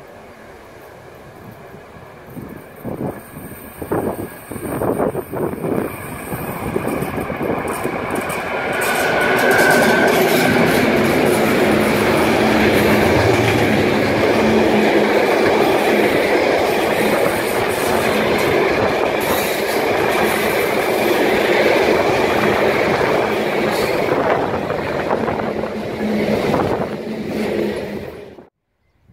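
Long freight train of loaded timber wagons passing close by, its wheels rumbling and clattering over the rail joints. The sound builds from a few seconds in and is loudest and steady from about nine seconds on.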